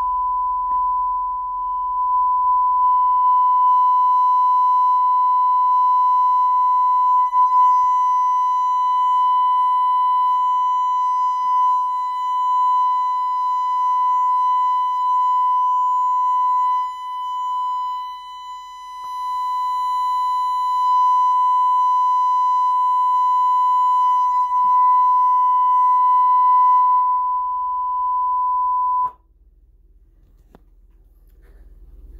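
A steady sine-wave test tone played through the McIntosh MA6200 integrated amplifier on the test bench while its output is measured. The tone holds one pitch, dips and wavers in level briefly just past the middle, then cuts off suddenly about a second before the end.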